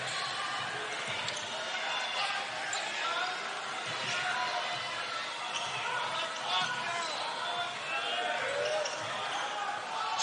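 Basketball being dribbled on a hardwood court during live play, over a steady murmur of the arena crowd.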